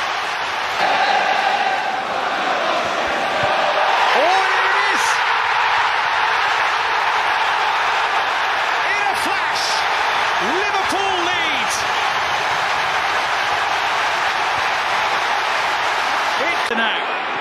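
Football stadium crowd cheering a goal: a dense, loud, sustained roar that swells about a second in, with scattered individual shouts and whistles in it.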